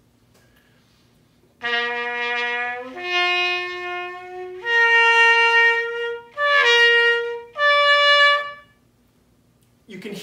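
Muted cornet playing a series of held notes that step mostly upward, each one a natural resonance of the horn: only certain notes sound, not a continuous range of pitch. Five notes begin about one and a half seconds in and stop a little over a second before the end.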